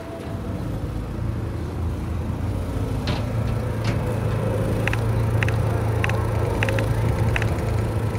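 A vehicle engine running close by on the street, a steady low hum that grows louder about a second in and holds. Several short, high clicks sound in the second half.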